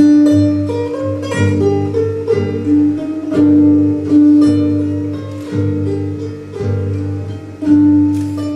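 Charango and acoustic guitar playing an Andean folk tune, with plucked notes over a slow line of low bass notes.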